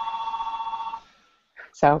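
A telephone ringing: one electronic trilling ring with a fast flutter that stops about a second in.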